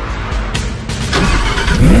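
A sports car engine starting up, its pitch climbing sharply near the end, over loud music with a heavy bass.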